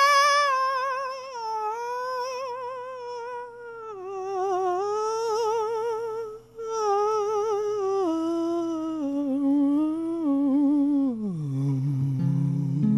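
Solo male voice singing a long wordless line with wide vibrato. It starts high and steps down in pitch, breaks briefly about six and a half seconds in, and slides down to a low note near the end.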